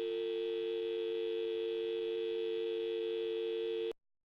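Telephone dial tone: a steady, unbroken two-note tone that cuts off suddenly just before the end.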